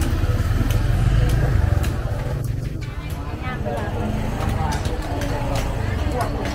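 A motor vehicle running close by, its low engine rumble strongest for the first two seconds and then easing, amid people talking in a busy open-air market.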